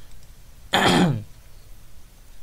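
A man clearing his throat once, a short burst about three-quarters of a second in.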